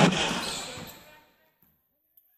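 A basketball bounces sharply once on the hardwood court at the start, amid voices and court noise, then all sound fades away to near silence within about a second and a half.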